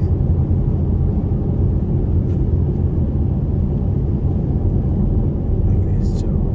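Steady low road rumble inside a car's cabin cruising at highway speed, around 70 mph.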